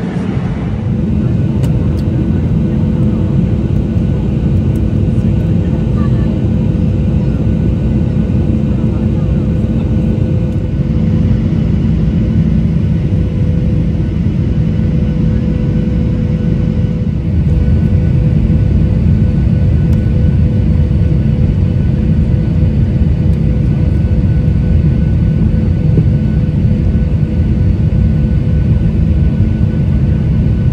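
Jet airliner cabin noise heard from a window seat: a steady rumble of engines and rushing air with a few faint steady hums, growing slightly louder a little past halfway as the plane descends.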